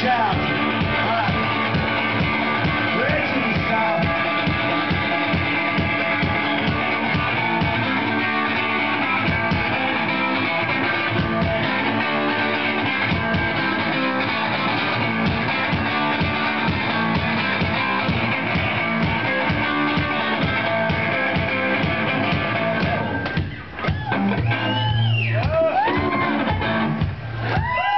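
Live guitar music with a steady bass-drum beat, loud, played by one seated musician. There is a short drop in loudness near the end before the music carries on.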